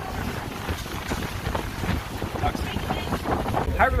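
Wind buffeting the microphone on the deck of a moving catamaran, an uneven low-pitched noise, with the open sea around the boat.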